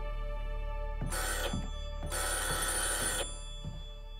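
Telephone bell ringing in two bursts, a short one about a second in and a longer one about two seconds in, over a soft sustained music score.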